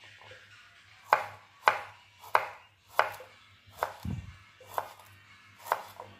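A kitchen knife slicing garlic cloves on a wooden cutting board: about seven separate cuts, each ending in a sharp tap of the blade on the board, at a slow, uneven pace. A dull low thump comes about four seconds in.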